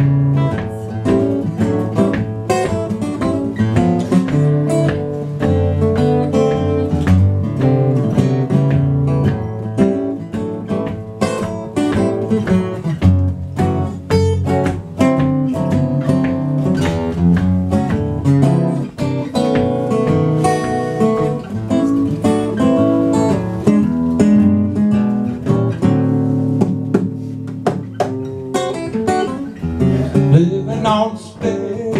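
Two acoustic guitars playing together in the instrumental opening of a song, with no singing.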